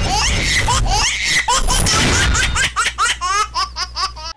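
Recorded laughter sound effects, several voices cackling and giggling over a music jingle. Near the end it becomes a quick run of short 'ha-ha-ha' laughs.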